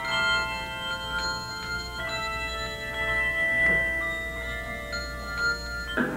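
A handbell choir ringing a tune: brass handbells struck every half second to a second, their tones ringing on and overlapping into chords.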